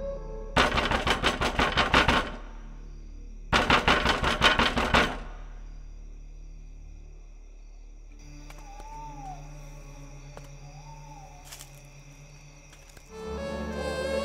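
Two bursts of rapid rattling knocks, each about a second and a half long, over a low ambient horror-film score. The score thins after them, with a few soft sliding notes, and swells again near the end.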